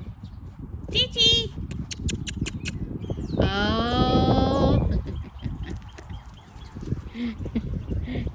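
A long, moo-like vocal call lasting about a second and a half, falling slightly in pitch, preceded by a brief high wavering squeal and a few sharp clicks. Low wind rumble on the microphone runs throughout.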